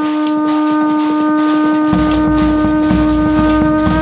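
Belarusian trumpet (surma), a curved wooden horn, sounding one long, steady held note that stops right at the end.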